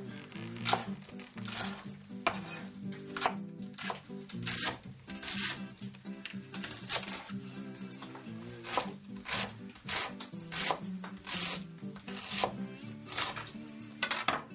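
Chef's knife slicing French endive on a wooden cutting board: a series of sharp strokes against the board, about one or two a second, over background music.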